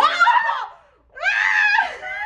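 Excited high-pitched screams from a small group of people: a short outburst at the start, a brief lull about a second in, then a longer scream.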